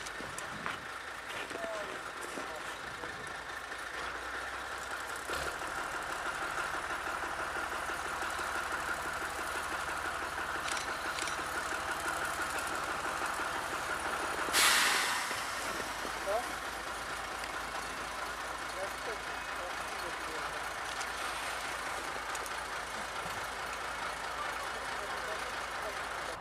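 Narrow-gauge diesel locomotive running slowly, with a steady engine note. About fourteen seconds in there is a short, loud burst of hissing air.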